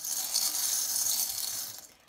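A pile of small metal charms and buttons jingling and clinking as a hand stirs through them in a bowl; the high, dense rattle dies away near the end.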